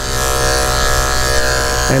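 Electric dog grooming clipper with a snap-on comb running, a steady buzzing hum with many even overtones, as it is worked through a puppy's coat.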